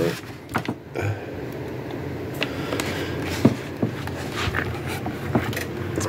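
Handling noise of a wooden case on a table: scattered light knocks, taps and scrapes as it is picked up and turned over.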